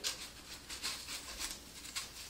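Faint rustling and rubbing of a cardboard paper towel tube being pushed into the hollow centre of a wheel of rolled disposable diapers, in a string of small scrapes.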